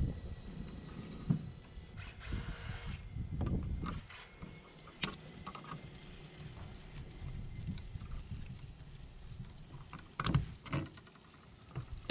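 Handling noise of electrical cable being worked by hand with wire strippers at a plastic exterior electrical box: rustling, and a few sharp clicks, two of them close together near the end, over a low, uneven rumble.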